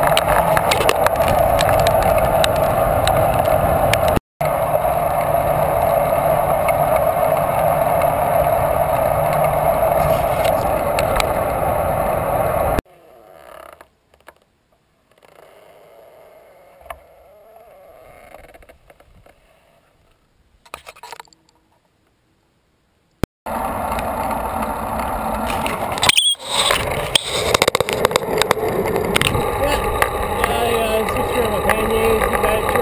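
Steady rushing road and wind noise of a touring bicycle riding along a paved highway, picked up by a handlebar-mounted camera. About halfway through it drops away to a quiet stretch with only faint sounds for roughly ten seconds. Then the riding noise returns, with a sharp knock a few seconds later.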